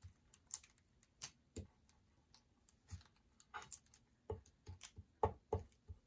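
Hands pressing and smoothing a glued paper doily down onto a book page on a cutting mat: a scatter of soft, irregular taps and paper rustles, busiest in the second half.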